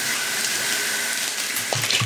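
Prawn crackers deep-frying in very hot oil in a wok, the oil sizzling with a steady hiss as the crackers puff up.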